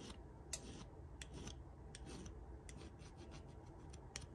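Small hand file scraping across the edges of a cast lead jig head, deburring it where the pouring sprue was snipped off: faint, irregular light scrapes and ticks.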